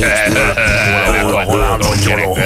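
Speech on a radio show over quiet background music, with a wavering voice.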